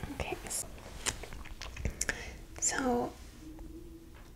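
Soft whispered speech, one short phrase about two and a half seconds in, among scattered light clicks and a brief rustle as a sheet of paper is picked up off a bench.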